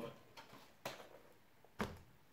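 Laptop being set down onto a corrugated cardboard stand: two light knocks about a second apart.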